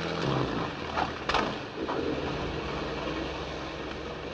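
A boat's engine running steadily, heard as a dull drone on an old 1940s film soundtrack, with a couple of faint knocks about a second in.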